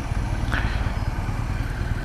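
Yamaha MT-07's parallel-twin engine idling steadily while the bike waits at a red light, a low, even rumble.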